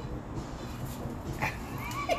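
Low, steady background noise, then a young child's short, high-pitched squeal about one and a half seconds in.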